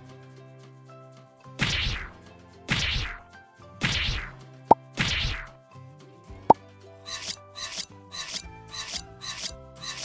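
Kitchen knife cutting a block of cheese on a glass cutting board: four long scraping slicing strokes, then a quicker run of short chopping cuts about twice a second as the blade meets the glass, with two sharp clicks in between.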